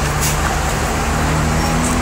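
City bus engine running close by amid street traffic: a steady low drone.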